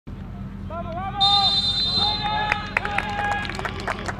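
Referee's whistle blown once: one high steady blast about a second long, starting about a second in, signalling the kickoff. Players shout around it.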